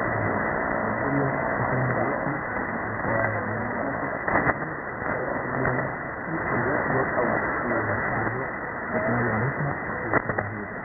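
Weak shortwave AM broadcast of Radio Djibouti on 4780 kHz: a voice barely heard through steady hiss and static. The audio is cut off above about 2 kHz by the receiver's narrow filter, with a brief static crash about four seconds in.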